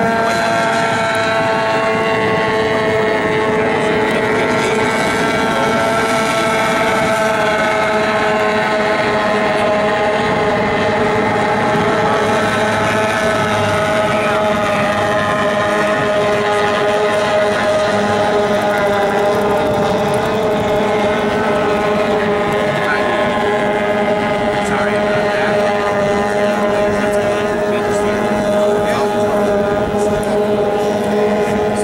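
Several outboard-powered racing runabouts running flat out together, their engines making a steady, high-pitched, overlapping whine whose pitches drift slowly.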